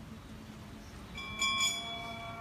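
A bell is struck about a second in, its several clear tones ringing on steadily over a low background hum.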